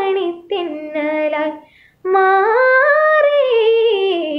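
A woman singing a Malayalam film song unaccompanied, with no backing instruments. A short phrase ends in a brief breath pause about halfway through, then a long held note rises and falls in pitch.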